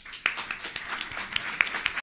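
Audience applause, starting about a quarter second in as a dense patter of hand claps, with sharper single claps from close to the microphone standing out.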